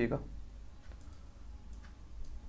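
A voice trails off at the start, then a few faint, sharp clicks from a computer, over a low steady hum.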